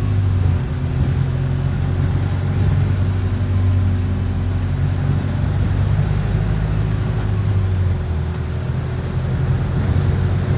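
Bus running on the road, heard from inside the passenger saloon: a steady low engine drone over road and tyre noise, with a faint steady hum. It eases slightly about eight seconds in.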